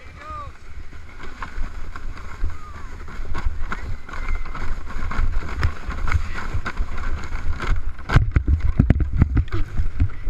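A plastic sled sliding downhill over packed snow, a rough rumbling scrape with wind on the microphone that grows louder as it picks up speed. Near the end comes a quick run of hard bumps and scrapes as the sled jolts over rough snow and comes to a stop.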